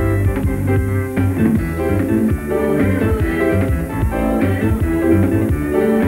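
Recorded band music: electric bass, keyboards and drum kit playing a steady groove with regular drum hits.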